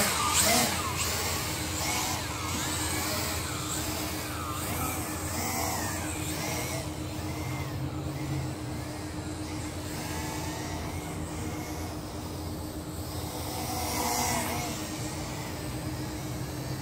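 UTO U921 quadcopter's large motors and propellers buzzing in flight, the pitch rising and falling as the throttle changes. Loudest just after takeoff, then softer as the quad flies away, swelling again briefly near the end.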